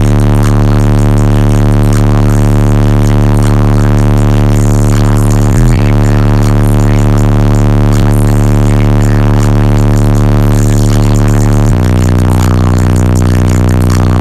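Two 15-inch X15 car subwoofers in a pickup truck playing a steady low bass test tone at extreme level for an SPL meter run, heard as a loud, buzzy drone. It breaks briefly about six seconds in, and about twelve seconds in it steps down to a lower tone.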